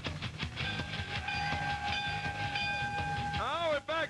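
Theme music of a TV wrestling show's bumper: a beat ends within the first second and gives way to a long, steady, high held note with overtones, like a horn blast. Near the end a man's voice comes in.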